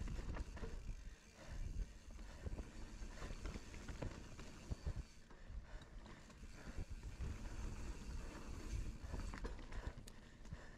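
Commencal mountain bike riding fast down a dirt and stony trail: tyre noise over the ground, with the bike rattling and knocking unevenly over bumps throughout.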